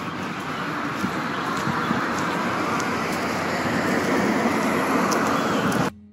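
Steady road traffic noise, slowly growing louder, and cut off abruptly near the end.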